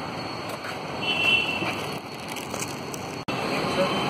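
Street background noise with a vehicle horn giving a short toot about a second in; the sound cuts off abruptly near the end.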